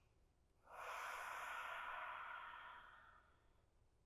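One soft, long breath, about two seconds, tapering off toward its end; otherwise near silence.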